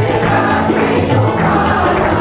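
Group of people singing a Hindu devotional bhajan to Gopala (Krishna) together, voices held on long notes over a steady low accompaniment.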